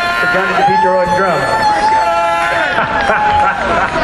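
Several people cheering with long held whoops as a live band's song ends, over general crowd noise.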